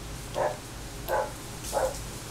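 A dog barking three times, the barks about two-thirds of a second apart.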